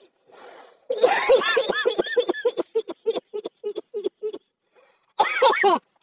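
A man laughing. A breath in is followed by a long run of laughter that breaks into short, evenly spaced pulses, then one more short burst of laughter near the end.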